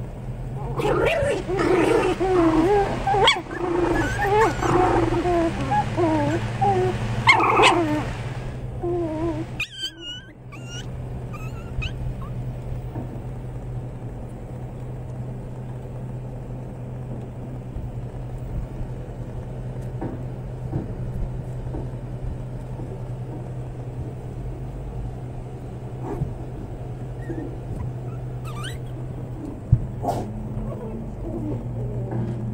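Puppies whimpering and growling as they play: a busy run of wavering calls for the first nine seconds or so, then only a few faint squeaks over a steady low hum.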